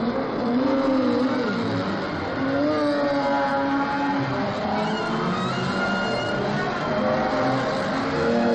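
A pack of sports-prototype race cars accelerating away from a race start, several engines revving at once, their pitches rising and falling over one another.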